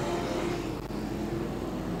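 Modified sedan race car engines running at speed, a steady note over a faint hiss.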